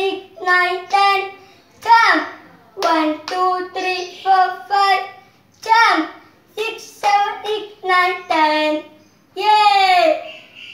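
A young boy's voice singing a counting action song in English, unaccompanied, in short sung syllables at about two a second.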